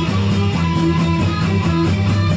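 Instrumental rock played live by a trio: electric guitar and electric bass over a drum kit, the bass holding low sustained notes and the cymbals keeping a steady beat.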